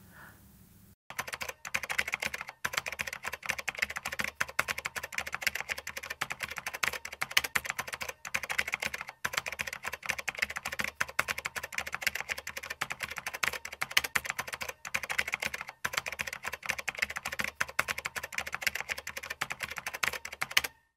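Computer keyboard typing sound effect: a fast, continuous run of key clicks that starts about a second in and breaks off briefly a few times.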